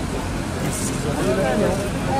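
Indistinct voices of people talking, mostly in the second half, over a steady low background rumble.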